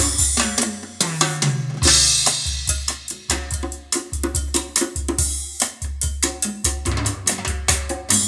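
Recorded music with drums and a deep bass line, played through a pair of Audioflex AX-1000 floor-standing loudspeakers. Drum hits fall in a steady rhythm, with a bright cymbal wash about two seconds in.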